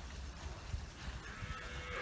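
A cow gives one short moo near the end, over steady background noise and a low rumble.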